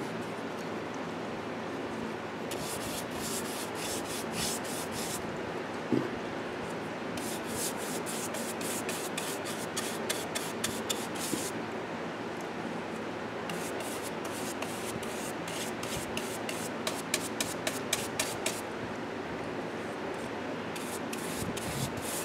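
Bristle paint brush scrubbing polyurethane varnish onto a carved wooden hat in quick back-and-forth strokes, in several runs of a few seconds each. Under it runs the steady hum of an air conditioner and a fan.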